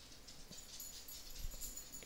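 Faint room hiss with two soft clicks, about half a second in and again near the end.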